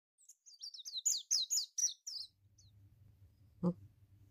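A bird chirping: a quick run of about eight high chirps, each falling in pitch. They are followed by a faint low hum and a single sharp click near the end.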